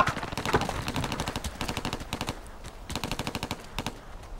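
Rapid automatic gunfire in long bursts, dropping off a little after two seconds and then starting up again.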